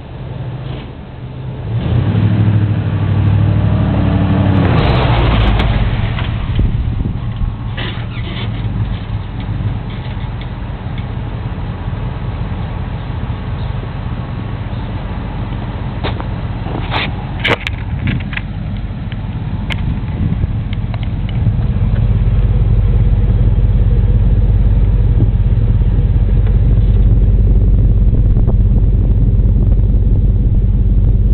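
Ford F-150 pickup's exhaust through a 14-inch single-in, single-out Magnaflow muffler. A couple of seconds in the engine revs up with a rising note, then settles to a steady low idle. A few short clicks come around the middle, and in the last several seconds the idle is louder and deeper, heard right at the tailpipe.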